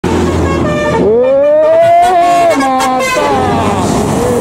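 Musical multi-tone bus air horn playing over a low diesel engine hum: about a second in one note slides upward and holds, then the horn steps through several other notes.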